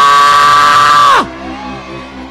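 A loud, high-pitched, long-held yell from a person's voice, which falls in pitch and cuts off about a second in; quieter background music and crowd murmur follow.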